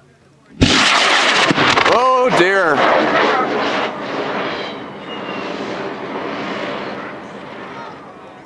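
Cesaroni CTI M2250 solid-fuel high-power rocket motor igniting and burning, a sudden loud roar that starts about half a second in and fades slowly as the rocket climbs away; this is the burn in which the motor's weak liner let the aft nozzle end of the casing burn through. Spectators shout briefly about two seconds in.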